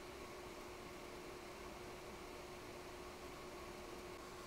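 Quiet room tone: a faint, steady hiss with a faint steady hum underneath, no distinct events.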